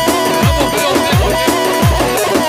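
Instrumental passage played on an electronic keyboard: a held synth melody over a steady electronic beat, with a deep bass kick that drops in pitch on the beats.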